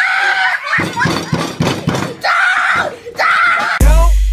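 A boy screaming in a tantrum, in several loud high-pitched bursts with thumps in between. Near the end it cuts to hip hop music with a heavy bass.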